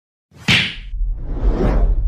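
Whoosh sound effects from an animated subscribe-button intro: a sudden whoosh with a sharp hit about half a second in, then a second whoosh swelling toward the end over a low rumble.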